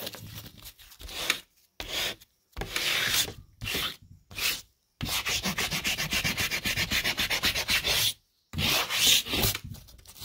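A chalky white piece scribbling on the paper face of sheetrock, making dry, scratchy strokes. The strokes come in short bursts with brief pauses, then turn into a fast back-and-forth run of about eight strokes a second from halfway through until shortly before the end.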